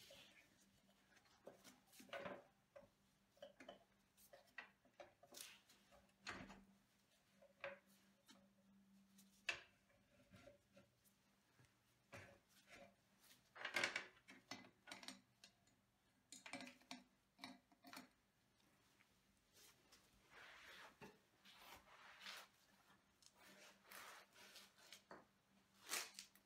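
Near silence broken by faint, scattered clicks, knocks and rubbing as hands and tools work at a motorcycle's rear wheel hub, with a slightly louder cluster of knocks about midway.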